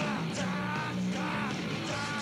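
Punk rock band playing, a male singer yelling the vocal over electric guitar, bass and drums.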